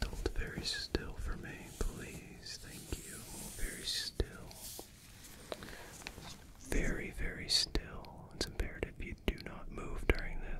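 Soft whispering very close to the microphone, broken by scattered small clicks and light handling sounds of a cloth tape measure.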